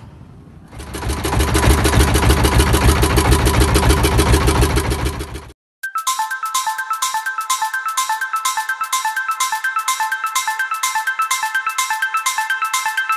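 A boat engine running with a fast, even pulse, swelling up about a second in and cutting off abruptly about five and a half seconds in. Then music with a marimba-like melody and a steady beat.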